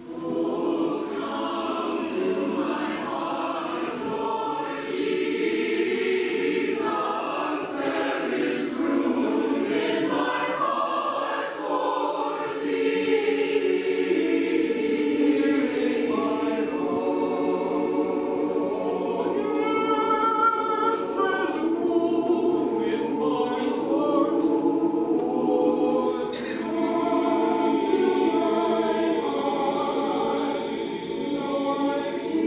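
Mixed choir of men's and women's voices singing together, coming in all at once at the very start and carrying on without a break.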